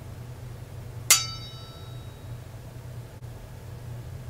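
A single sharp, bright ding about a second in, ringing briefly with several high tones, over a steady low background hum.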